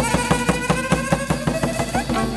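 Chầu văn ritual music: a moon lute (đàn nguyệt) playing a melody that slides upward, over a quick, steady percussion beat.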